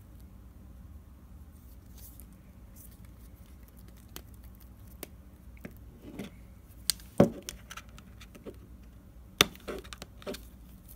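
Scattered light clicks and taps of an iPhone display assembly and phone body being handled and set down on a desk, with a louder knock about seven seconds in and a sharp click near the end.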